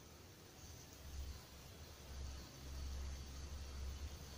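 Faint steady hiss of a grapefruit used as a hookah bowl starting to sizzle and burn under three hot coals in a heat management device, which is normal. A low rumble comes and goes from about a second in.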